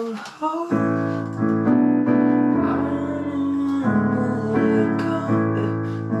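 Casio digital keyboard playing block chords on a piano sound, starting just under a second in, each chord held about a second before the next.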